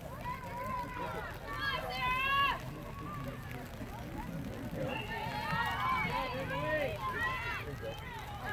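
High-pitched shouts of girls on a lacrosse field, called out in two spells of a couple of seconds each, over a low steady rumble.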